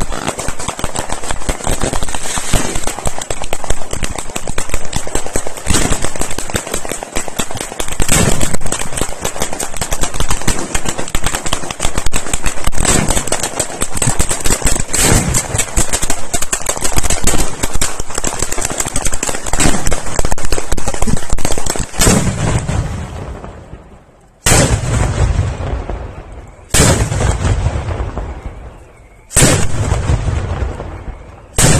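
Fireworks display: a dense, continuous barrage of rapid bangs and crackles for about twenty-two seconds. Then four heavy booms about two and a half seconds apart, each dying away slowly.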